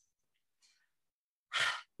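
Near silence, then about one and a half seconds in, a single short audible breath taken just before speaking.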